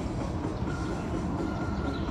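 Dance-workout music from a speaker, faint held notes over a steady, dense low rumble.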